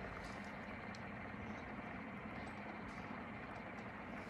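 Faint steady background hum, with a few soft rustles of chunky glitter being rubbed off the fingertips and sprinkled onto an epoxy-coated tumbler.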